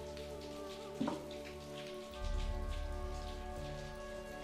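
Rain falling under a film score of held tones, with a deep low swell coming in about two seconds in. A brief sharp sound stands out about a second in.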